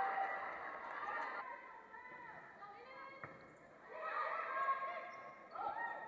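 Faint voices of players calling out across a large gym, with one sharp smack of a volleyball being struck about three seconds in.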